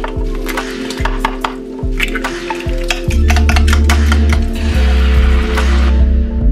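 Background music with a bass line that comes in about halfway, over kitchen sounds: a spoon clicking and scraping against a nonstick frying pan as beaten egg and chopped sausage are stirred, with a light sizzle.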